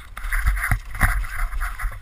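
Downhill mountain bike rattling down a rocky dirt trail, heard from a helmet-mounted camera: wind buffeting the microphone and a steady rough rushing of tyres and bike noise, with several short knocks as the bike hits rocks.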